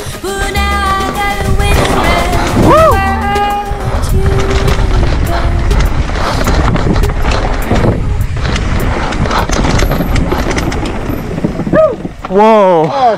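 Background music with a singing voice, laid over the clatter and tyre noise of a mountain bike descending a rough dirt trail. There are many short knocks as the bike runs over roots and rocks, and the bike noise takes over after the first few seconds.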